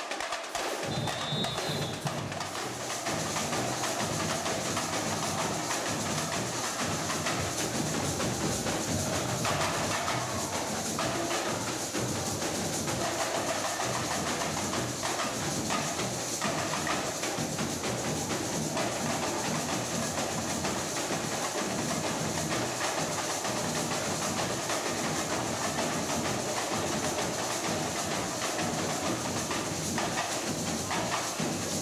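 Samba percussion band playing a steady, driving drum rhythm on large bass drums.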